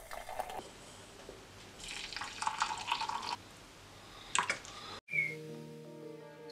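Hot water pouring from a kettle into a glass French press, a hissing stream heard at the start and again for over a second in the middle, followed by a short clink. About five seconds in, music with sustained plucked-string notes starts.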